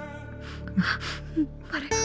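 A few short, breathy gasps from a person, with soft background music under them.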